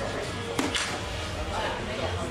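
A soft-tip dart striking a Phoenix electronic dartboard once, a sharp tap about half a second in, over the chatter and background music of the hall. The throw scores a single 14.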